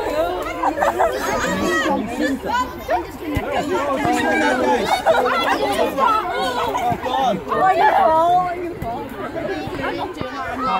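A group of people chattering at once, several voices overlapping so that no words stand out.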